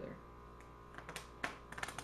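Playing cards riffle-shuffled together on a wooden table: a rapid flutter of card-edge clicks in the second half.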